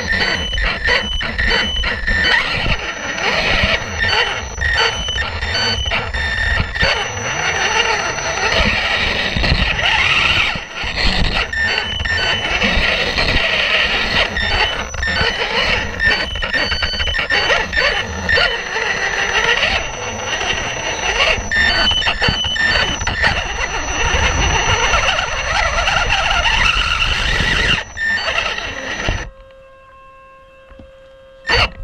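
A Losi 1/18 Mini Rock Crawler's electric motor and gears whining, rising and falling in pitch with the throttle, over a constant clatter of knocks and rattles as the chassis and tyres crawl over rocks. It cuts off suddenly about a second before the end.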